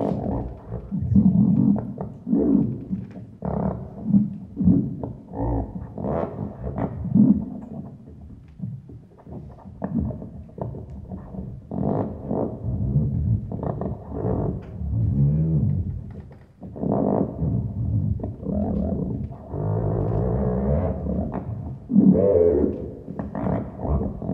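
Low, buzzy electronic tones from a touch-controlled instrument that passes a small current through the player's skin between two upright poles; the tone shifts as more or less skin is pressed on the poles, and a randomizing algorithm varies it further. The tones come in short, irregular pulses with some bends in pitch, turning more sustained near the end.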